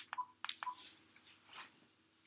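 Cordless phone handset keys being pressed to end a call: a few faint clicks in the first second, two of them with a short beep.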